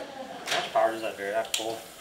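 Indistinct talking in the background, with a single sharp click about one and a half seconds in.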